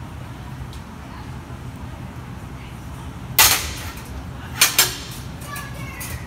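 Steel ring on an overhead ninja-warrior obstacle track clanking against its rail as it is hung on and jerked: one sharp clank about three and a half seconds in, then two quick clanks a second later, over a steady low hum.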